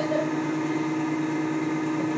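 Van de Graaff generator's belt-drive motor running with a steady hum.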